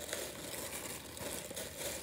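Thin plastic packaging bag crinkling as it is handled, a steady rustle with small crackles.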